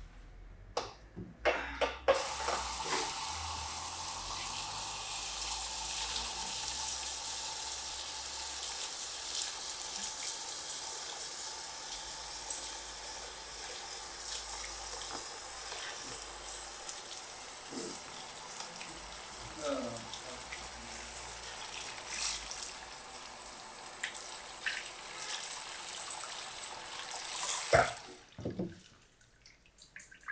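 Barber sink's hand spray hose running steadily as shampoo lather is rinsed from a head into the basin. It comes on suddenly about two seconds in and shuts off a couple of seconds before the end. A few sharp knocks come just before it starts.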